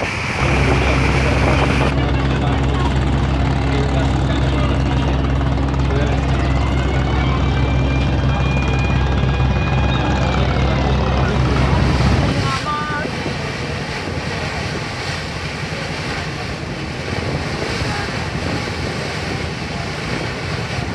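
Steady low drone of a river boat's engine running, which cuts off a little over halfway through, leaving wind and water noise.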